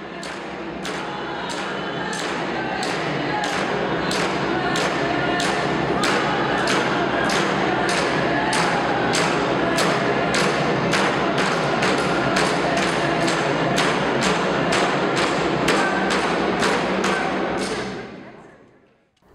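A group of Inuvialuit frame drums struck together with sticks in a steady beat of about two strokes a second, with voices singing over the drumming. It fades in at the start and fades out near the end.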